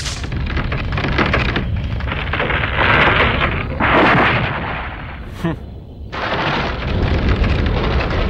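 Animated sound effect of sliced tree trunks toppling and crashing down: a long rumbling crash that surges louder about three and four seconds in, drops briefly near six seconds, then rumbles on.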